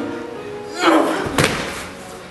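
A loud cry from a performer about a second in, followed by a single sharp thud of a body or feet hitting the stage floor during a struggle, over steady background music.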